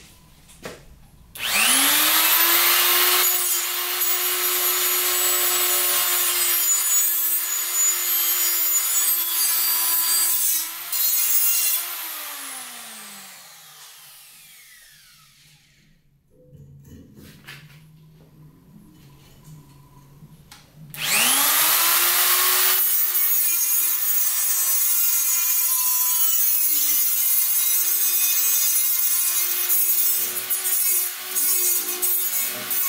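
Corded angle grinder with a cut-off disc cutting a steel angle bar. Its motor whines up to speed, runs about ten seconds and winds down with a falling whine. After a pause of handling noise it spins up again about three-quarters of the way through and keeps cutting to the end.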